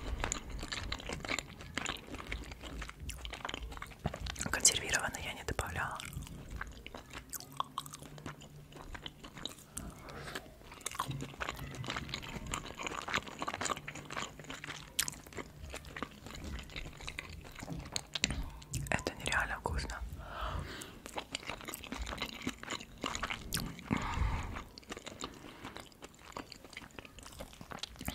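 Close-miked chewing of shrimp fried rice, with wet mouth sounds and many small clicks. Near the end a metal fork scoops more rice from the pineapple shell.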